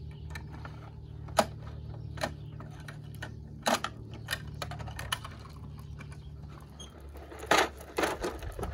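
Plastic clicks and rattles from a toy MAN garbage truck's bin-lifting arm being worked by hand to raise and tip a toy trash bin, with sharper knocks about a second and a half in, near four seconds and near the end.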